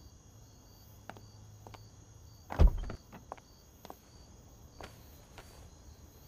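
A car door being worked: light clicks of the handle and latch, and one heavy low thud about two and a half seconds in, over a faint low hum.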